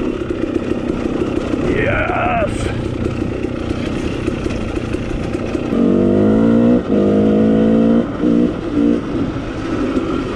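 KTM two-stroke dirt bike engine running under throttle on the trail. The revs sweep up and back down about two seconds in. From about six seconds in, a loud, steady held note is broken by a brief throttle chop near seven seconds and a few quick on-off throttle stabs near the end.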